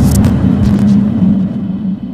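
Logo-sting sound effect: a loud deep rumble with a steady low hum under it, with a few short swishes in the first second.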